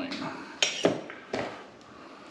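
A few light knocks and clicks of kitchen utensils being handled on a counter, spaced out over the first second and a half.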